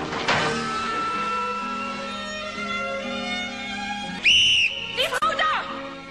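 Orchestral film score with held string notes. About four seconds in comes a short, loud, high-pitched tone, and a brief voice follows near the end.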